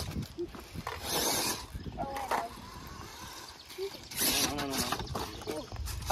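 People talking outdoors, their voices coming and going. About a second in, a brief hiss stands out between the voices.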